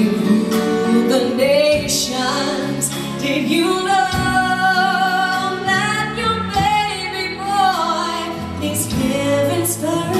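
A woman singing live into a microphone with guitar accompaniment, holding long notes through the middle.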